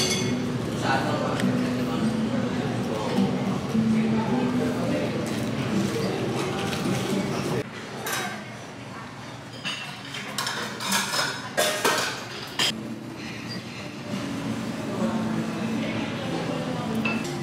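Restaurant dining-room chatter. About halfway through the level drops, and scattered clinks and knocks follow from dishes, metal hot-pot lids and pots, and utensils at a hot-pot table, most of them a little after that.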